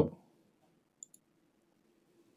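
Two faint, short clicks about a second in, over a faint steady low hum.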